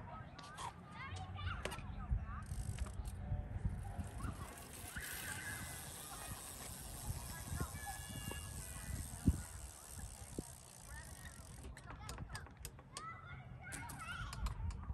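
Rear wheel of a cruiser BMX spun by hand, ticking quietly as it coasts, with the freshly adjusted brake pads close to the rim and at most lightly rubbing; a low background hum runs under it.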